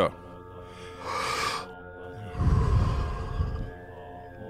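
A man takes a deep Wim Hof method breath: a quick hissing breath in through the mouth about a second in, then a longer breath out that blows on the microphone and fades. Steady background music with held tones plays under it.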